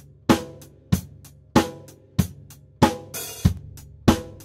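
Recorded drum kit played back through the soloed overhead microphones: a steady beat of kick and snare hits, one about every two-thirds of a second, each with a bright cymbal and hi-hat wash. A high-pass filter set around 113 Hz is thinning out the low end that the kick drum already covers.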